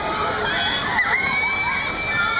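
Water fountains of a swinging amusement ride spraying in a steady rush, with riders screaming and shouting over it. One long, high scream starts about a second in.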